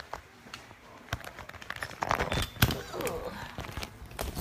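Handling noise from a phone being repositioned on a tripod: a scatter of clicks, knocks and rubbing against the microphone, loudest a little past halfway.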